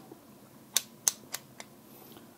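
Plastic pieces of Aleksandr Leontev's 205 Minute Cube, a sequential-movement puzzle cube, clicking as they are slid in and out by hand. There are four short clicks about a quarter second apart, starting about three-quarters of a second in.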